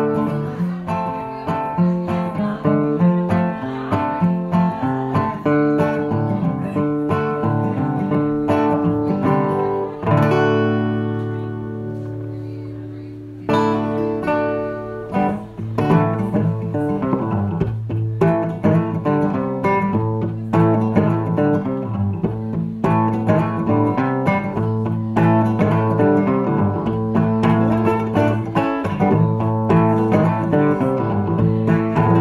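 Resonator guitar played solo with steady picked notes. About ten seconds in, a single chord rings out and fades, then cuts off abruptly a few seconds later. A new picked guitar part starts right away and keeps an even rhythm to the end.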